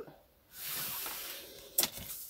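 A felt-tip marker drawn in one long stroke over paper along a ruler, a dry, steady scratchy hiss lasting about a second, followed by a short sharp click near the end.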